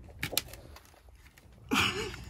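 Quiet scuffs and a few sharp clicks from footsteps and phone handling as a person squeezes through a low stone tunnel, then a brief low hum-like sound near the end.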